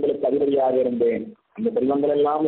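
A man speaking in Tamil, with a brief pause about one and a half seconds in.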